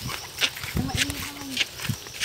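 Footsteps on a dirt path, short scuffs about two a second, with a single held voice-like sound in the middle lasting under a second.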